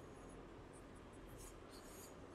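Whiteboard marker writing on a whiteboard: several short, faint, high strokes as letters are written, mostly in the second half, over faint room hiss.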